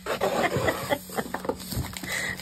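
Clear plastic wrap crinkling and rustling in irregular crackles as hands work it off a framed canvas.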